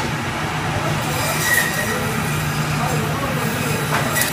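Steady low hum and hiss of machinery in a meat-cutting room, with faint indistinct voices underneath.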